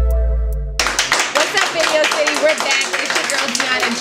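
A short musical stinger: a held low bass note fading out under a few electronic notes stepping upward. It cuts off just under a second in, giving way to clapping and crowd chatter.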